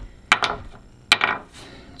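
A chunk of cured hull bonding knocked twice against a hard glossy ledge: two sharp, hard clicks just under a second apart. The bonding is set rock-hard and brittle, with no give at all.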